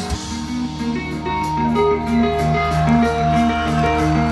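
Rock band playing live, captured on a crowd recording: guitars pick a repeating pattern of short notes, with a few held higher notes, over a steady bass line, with no vocals.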